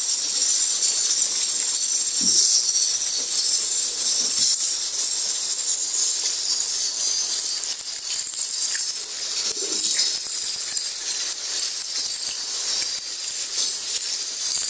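Tap water running steadily onto tinda gourds and potatoes in a plastic colander in a steel sink, with a few soft knocks as the vegetables are rubbed clean by hand.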